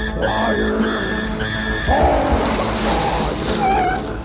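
Film soundtrack: music with a high tone pulsing about every half second. About two seconds in, a loud hissing, squealing noise takes over, with falling squeals near the end.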